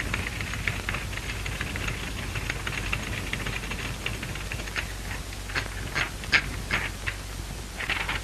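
Typewriter keys clacking in irregular runs of clicks, with a few louder strikes in the second half, as a letter is typed out. Under them runs the steady hum and hiss of an early sound-film track.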